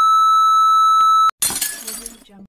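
Steady, single-pitch test-tone beep of a TV test card, cutting off abruptly about a second and a quarter in; a moment later a short, sharp crash that quickly dies away.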